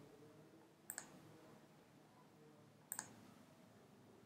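Two short, sharp computer mouse clicks about two seconds apart, selecting folders in a file browser, over near-silent room tone.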